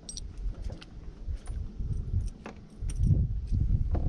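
Scattered light metallic clicks and ticks from fishing tackle as the lure is reeled in, over a low rumble of wind and water against the boat.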